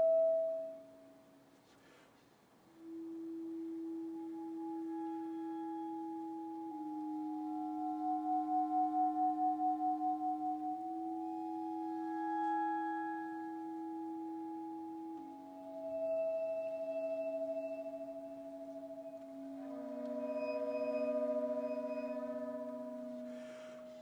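Slow, soft contemporary chamber music: a B-flat clarinet holds long two-note multiphonic tones that shift every few seconds, while bowed vibraphone bars ring with motor off, sustained notes that swell and fade above it, one pulsing briefly.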